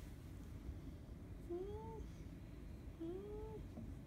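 A cat meowing twice, about a second and a half apart. Each meow is short and rises then falls in pitch.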